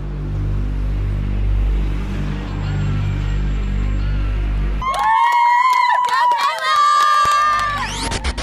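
A low steady hum, then about five seconds in, young women squealing and cheering with excitement in two long high-pitched shrieks.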